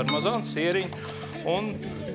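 A man speaking over steady background music.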